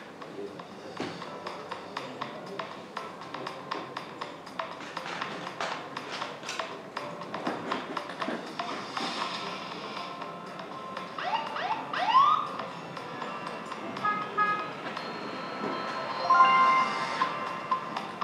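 Soundtrack of a promotional video played over a hall's loudspeakers: background music with a run of sharp percussive clicks, two rising sweeps partway through, and chime-like steady tones near the end.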